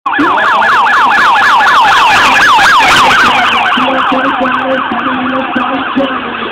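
Vehicle siren on a fast yelp, its pitch sweeping up and down about four to five times a second. It is loud at first and fades after about three seconds.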